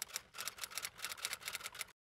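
Typing sound effect: a quick run of about fifteen keystroke clicks, roughly one per letter as a title is typed out on screen, starting and stopping abruptly.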